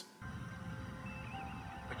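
Quiet background score music, a low rumble with a few faint held notes, coming in a moment after the start.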